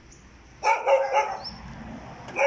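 A dog barks once, a loud bark about half a second in.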